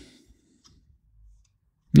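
A few faint clicks and light taps of tarot cards being handled and drawn from the spread on a table top.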